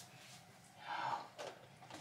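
A woman's single audible breath, soft and short, about a second in, followed by a faint click.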